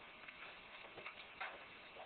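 Two-day-old Doberman Pinscher puppies suckling at their dam: faint, irregular clicks.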